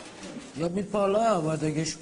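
Low background noise, then from about half a second in a man's voice speaking a few untranscribed words.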